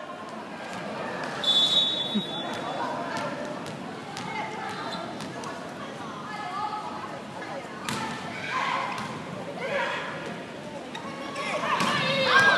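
Volleyball rally in an arena: sharp smacks of the ball being served and hit, several times, the loudest about eight seconds in, over a steady murmur of crowd voices. A short high whistle tone sounds about one and a half seconds in, before the serve.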